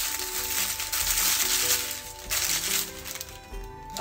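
Paper packaging crinkling and rustling as a small glass dropper bottle is unwrapped by hand. There is a brief pause a little over two seconds in, then more crinkling, with background music underneath.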